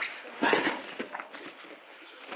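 Bare feet stepping and shuffling on foam mats with gi fabric rustling and brushing as two grapplers move through a guard pass. The loudest scuff comes about half a second in, with a few lighter thumps about a second in.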